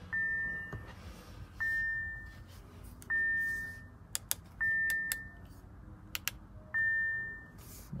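2019 Audi Q3's cabin warning chime sounding five times, a single high ding about every one and a half seconds, with the ignition just switched on. A few sharp clicks fall between the later chimes.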